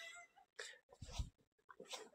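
Near silence in a pause between speech, with a couple of faint, brief sounds about half a second and a second in.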